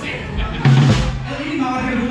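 A live band's drum kit playing, with one loud cymbal-and-bass-drum accent about two-thirds of a second in over a held low note.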